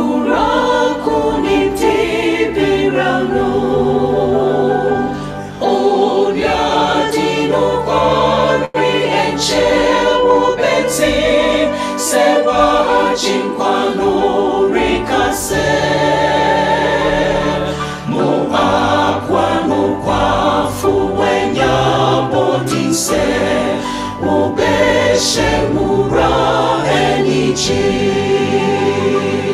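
Virtual choir of men's and women's voices singing a hymn in Twi in parts, phrase after phrase with short breaks between.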